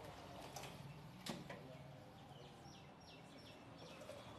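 A single sharp knock about a second in, from the fish knife against the wooden chopping block, with fainter knife taps before it. In the second half, a small bird chirps about five times in quick succession, each chirp falling in pitch.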